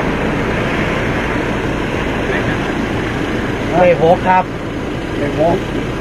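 Toyota Hilux pickup truck idling at close range, a steady engine noise, with a few short spoken words over it about two thirds of the way in.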